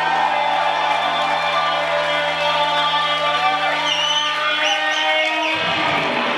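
Psychedelic rock band playing live, with electric guitars and bass holding a long sustained chord while sliding guitar notes glide over it. The low held notes drop out near the end.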